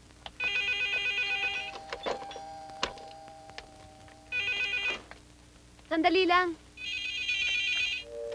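Telephone bell ringing with a fast trill, three rings that nobody answers. Between the second and third rings comes a brief wavering voice-like sound, and there are a few light clicks.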